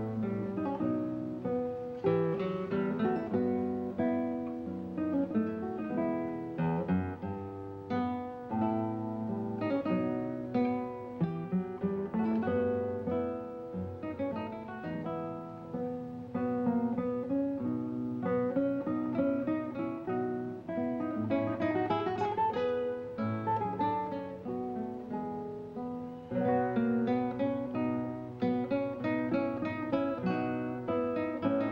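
Classical guitar music: nylon strings plucked fingerstyle in a continuous, flowing passage, with a moving bass line under higher melody notes.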